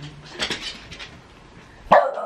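A French bulldog gives one loud, short bark near the end, after a few quieter sounds.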